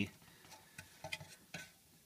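A few faint, short clicks and taps of handling noise in a pause between words, most of them between about one and one and a half seconds in.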